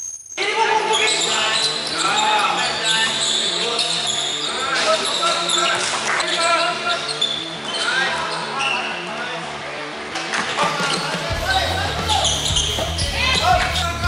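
Live sound of an indoor basketball game: the ball bouncing on the court and players' voices echoing in the hall. About eleven seconds in, a music track's bass line comes in under it.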